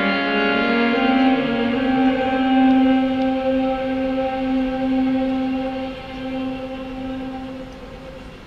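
Final held chord of a live folk song: two violins sustaining long bowed notes over the band, dying away over the last couple of seconds.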